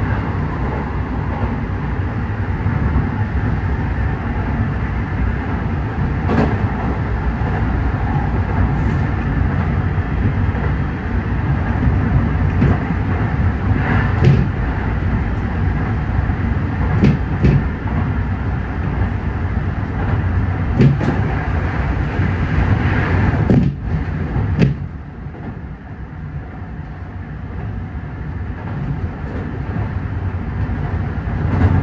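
Electric commuter train running on rails, heard from the front of the train: a steady low rumble with scattered sharp clicks of the wheels over rail joints and points. The sound drops sharply about 25 seconds in and then slowly grows again.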